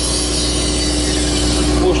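Hitachi mini excavator's diesel engine running steadily, heard from inside the cab, with a constant hum over it.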